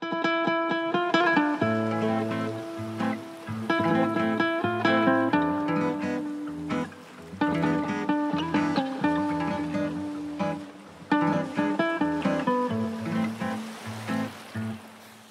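Song intro played on a nylon-string classical guitar: a run of plucked melody notes over lower bass notes, with no singing.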